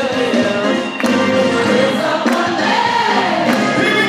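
Live gospel music: voices singing over a band, with a few sharp drum kit hits about a second apart.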